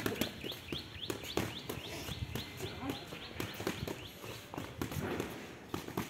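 Boxing gloves smacking together in quick, irregular punches and blocks, with shoes shuffling on the paving. A high, rapidly repeated chirping runs through the first second or so.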